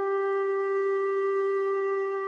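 Background music: one long, steady-pitched note on a flute-like wind instrument.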